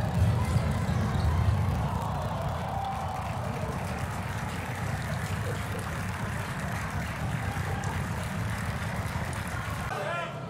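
Steady low rumbling background noise of a sports hall, a little louder in the first two seconds, with no clear voices or distinct impacts.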